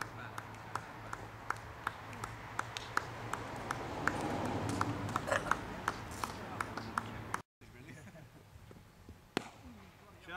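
Slow, steady hand clapping by a few people, about two or three claps a second, applauding a batsman walking off after his innings, over a murmur of voices. The clapping cuts off suddenly about seven seconds in.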